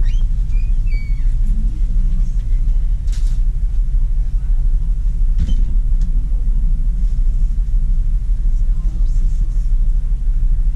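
A steady low rumble, with a few faint brief rustles over it.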